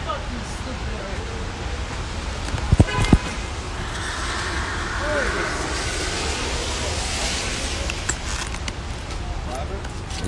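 Street traffic on a wet road, with tyre hiss swelling and fading through the middle. Two sharp knocks from the phone being handled come about three seconds in.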